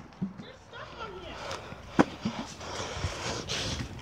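Rustling handling noise on a phone microphone as the phone is moved about over grass, with one sharp knock about two seconds in and faint voices.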